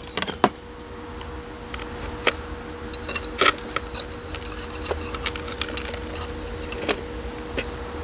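Coarse gravel grit clicking and rattling against a glazed ceramic bowl pot as succulents are pressed and packed into it by hand: scattered sharp clicks that crowd together in the middle and thin out toward the end. A steady faint hum runs underneath.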